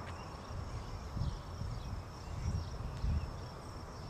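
Steady high-pitched insect trill from the grass, with irregular low rumbling thumps underneath.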